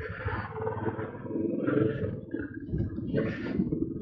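Royal Enfield 350 motorcycle's single-cylinder engine running under way, a low pulsing exhaust rumble that swells a little as the bike pulls along.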